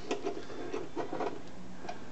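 Faint clicks and rubbing of a steel nut being threaded onto a bolt and worked with a small socket ratchet.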